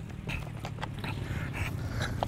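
Low steady street rumble with a few faint short knocks and scrapes from a manual wheelchair being pushed against a raised asphalt lip, its wheels catching at the step left by resurfacing.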